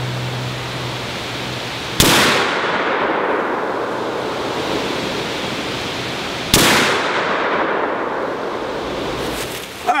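Two rifle shots from a short-barrelled AR-15 carbine, about four and a half seconds apart, each a sharp crack with a long echoing tail, heard from about 25 yards downrange. Both shots sit over steady wind noise in the trees.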